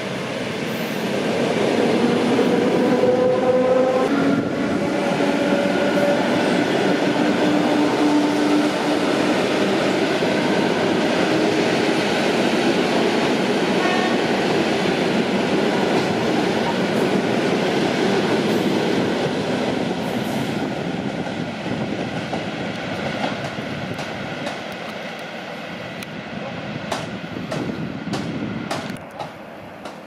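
Suburban electric multiple-unit train passing close by: a loud rush of wheels on rails with steady whining tones through the first several seconds. It fades over the last ten seconds as the train runs away, with a few sharp clicks near the end.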